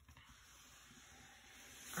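Soft, steady swishing hiss of hands sliding over a diamond-painting canvas to smooth it flat, growing a little louder near the end.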